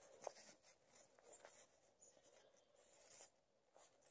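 Near silence, with faint scratching and a few light ticks of a puppy's paws and body on crusty snow.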